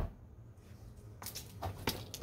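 Screwdriver tip tapping and probing wooden eave rafters while checking for drywood termite galleries: one sharp tap at the start, then a few lighter taps and scrapes near the end.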